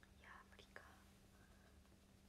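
Near silence: a woman whispering faintly to herself during the first second, over a faint steady low hum.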